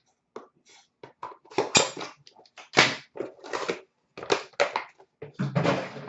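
Hands handling a metal Upper Deck The Cup hockey card tin and its packaging: a quick, irregular string of crinkles, scrapes and light knocks.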